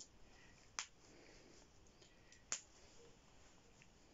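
Two short, sharp clicks about two seconds apart, against near silence: press-stud poppers being snapped shut on the crotch of a baby bodysuit.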